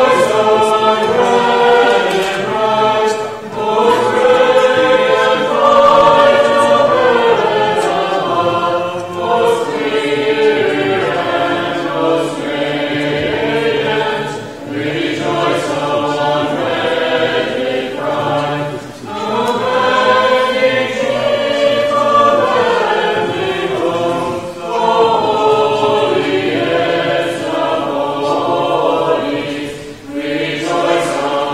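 Small mixed church choir of men's and women's voices singing an unaccompanied Orthodox liturgical chant in harmony, in phrases of several seconds broken by brief breaths.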